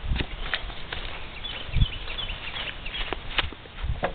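Scattered knocks and low thumps, the loudest about two seconds in, as a man climbs off a parked motorcycle and walks away; a few faint high chirps partway through.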